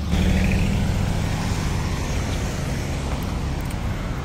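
Steady road-traffic noise at a street intersection, with a continuous low vehicle rumble.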